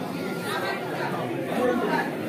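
Chatter of several people talking at once, overlapping voices with no one voice clearly leading.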